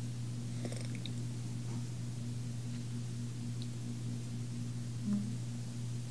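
A steady low hum with a faintly pulsing upper tone, with a few soft clicks and a brief higher hum about five seconds in.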